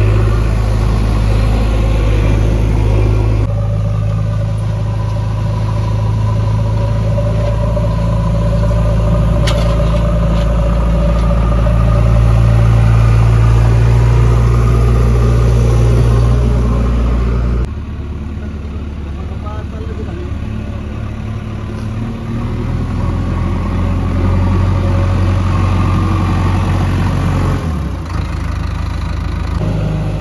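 Diesel engine of a JCB backhoe loader running close by, a steady low note that shifts suddenly in level and pitch a few times.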